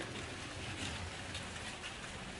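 Faint steady background noise of an outdoor space, with a few soft ticks and no clear source.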